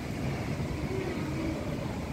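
Strong cyclone wind buffeting the microphone over heavy surf breaking on the shore, a steady rushing noise with a choppy low rumble.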